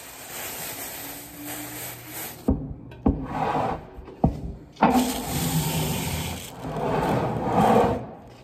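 Plastic sheeting rustling as it is lifted off damp clay pots. Then a few sharp knocks from a plaster board being handled and set on a workbench, followed by more rustling and sliding.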